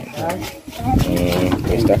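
People talking in conversation. Voices run through almost the whole stretch, which holds only speech.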